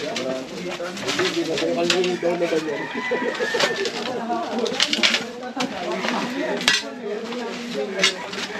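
Sharp knocks and rattles of plastic buckets and metal scrap being moved by hand while rummaging through a junk pile, over birds calling in the background.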